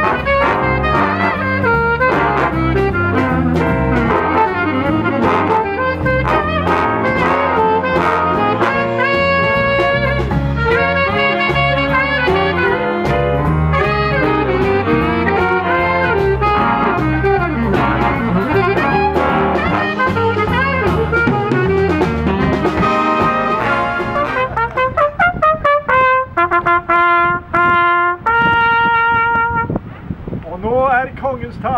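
Big band playing jazz: trumpets, trombones and saxophones over drums. About six seconds before the end the full band gives way to a lone trumpet playing held notes with short gaps between them.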